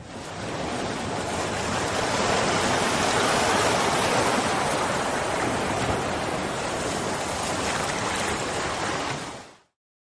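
A steady rushing noise, like surf, that swells up over the first two seconds and cuts off suddenly near the end.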